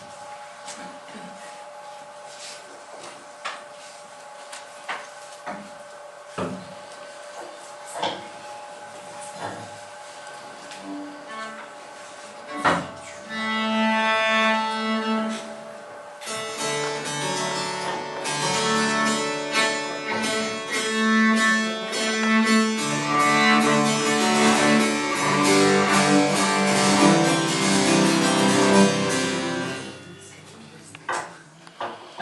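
Scattered knocks and shuffling while a cello is set up, then a sharp knock followed by one held bowed cello note. From about sixteen seconds a cello and harpsichord play together; the music stops just before the end.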